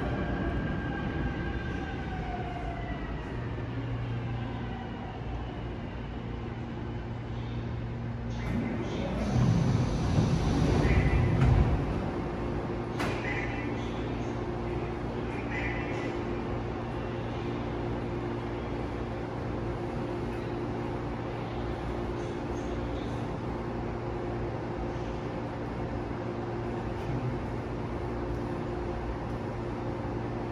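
Seoul Subway Line 5 electric train braking to a stop, its motor whine falling in pitch over the first couple of seconds, then standing with a steady low hum. Between about nine and twelve seconds in there is a louder rumble as the train doors and platform screen doors slide open.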